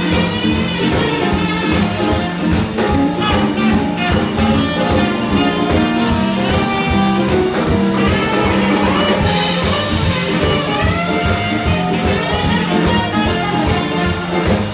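Live boogie-woogie blues band playing, with a tenor saxophone soloing in bending, sliding phrases over a steady drum beat.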